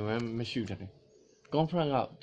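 A man's voice making drawn-out, wordless vocal sounds, with a short pause near the middle.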